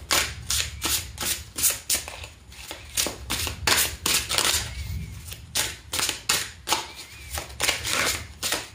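A deck of Tarot of Mystical Moments cards being shuffled by hand, the cards slapping and snapping together in quick sharp clicks, about three a second, with a short pause about halfway through.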